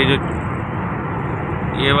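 Steady road noise inside a moving car's cabin on a wet motorway: tyre and engine noise, with no clicks or rhythm.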